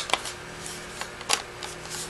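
Plastic clicks and handling noise from a small external hard-drive enclosure as its snap-on lid is pressed onto the case: one sharp click at the start, then a few lighter clicks.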